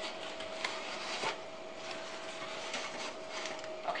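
Quilted oven mitts rubbing and scraping against a softened vinyl record and a metal baking tray on the stovetop, with small scattered clicks, over a faint steady hum.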